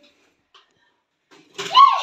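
Near silence for about a second and a half, then a voice saying "yes" near the end.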